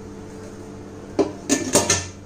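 Stainless-steel pressure cooker lid being set onto the cooker and closed: a few metal clanks and scrapes starting about a second in.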